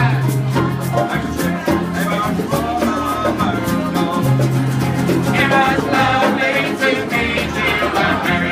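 Traditional Irish folk song played live on strummed acoustic guitars and a banjo, with steady low notes under the strumming. A man's singing voice comes in strongly about halfway through.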